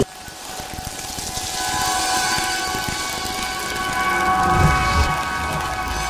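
Sound-design swell under an animated logo ident: a hiss that builds over a held synthesizer chord, with a low boom about four and a half seconds in and a deep bass rumble carrying on near the end.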